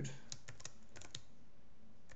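Typing on a computer keyboard: a quick run of about eight keystroke clicks over the first second, then a pause.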